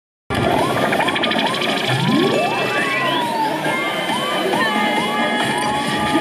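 Electronic siren-like sound effect: quick rising-and-falling whoops, two or three a second, with one long rising sweep about two seconds in, over a dense, noisy din.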